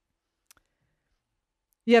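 Near silence between sentences of a talk, broken by one faint click about half a second in; a woman's voice starts again near the end.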